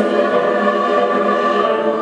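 Mixed choir of women's and men's voices singing sustained, held notes.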